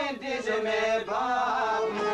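Albanian folk song: a singer holds a long, wavering, ornamented vocal line over instrumental accompaniment, with two brief breaks in the line.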